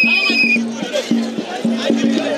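Festival music from the crowd: a rapid, even beat of drum strokes, about three a second, under chanting voices. A shrill, high held note with a wavering edge cuts off about half a second in.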